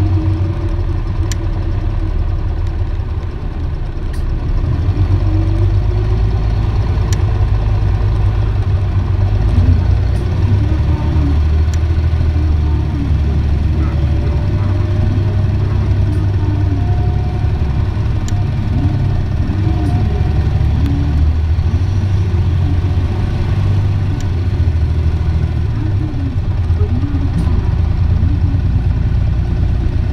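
Isuzu Erga city bus heard from inside while driving: the diesel engine and drivetrain rumble low and steady. A whine rises slowly in pitch partway through as the bus gathers speed, over faint rattles and clicks from the body.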